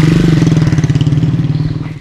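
A vehicle engine running close by at a steady pitch, loudest at first and fading toward the end.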